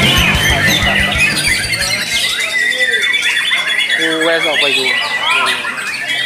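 Many caged songbirds, white-rumped shamas among them, singing and chattering at once in dense overlapping whistles and chirps, with a long, high, held whistle in the second half. Music with a beat fades out about two seconds in.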